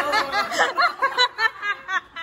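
A person laughing in a rapid string of short, high-pitched bursts.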